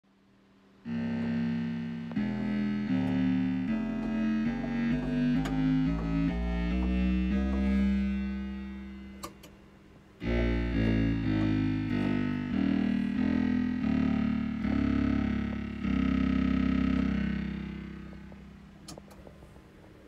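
SLM Pedal Bass analog synthesizer played by pressing its pedals, sounding runs of quick bass notes. A first phrase begins about a second in and fades out; a second phrase starts near halfway and ends on a long held note that dies away.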